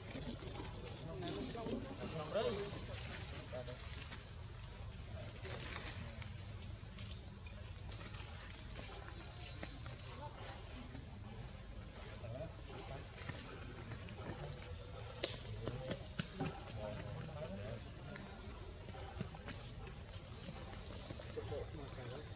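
Faint, indistinct voices come and go in the background, loudest a couple of seconds in and again around 15 to 17 seconds. A steady high-pitched hiss runs beneath them.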